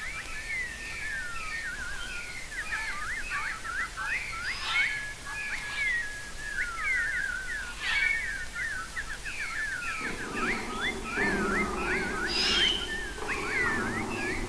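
Birds chirping and singing, many short quick calls overlapping in a busy chorus. About ten seconds in, low sustained music tones begin to come in underneath.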